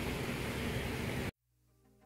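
Steady rushing outdoor noise on a handheld camera microphone, cut off abruptly just over a second in. Near silence follows, then faint music begins near the end.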